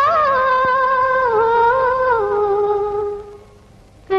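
A female singer's wordless vocalise, held long notes with no lyrics, in a film song. The notes step slowly downward and fade away a little past three seconds in.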